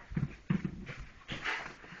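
Quiet sounds from a small child sitting with a book: soft breathy murmurs and the rustle and handling of a paperback's pages.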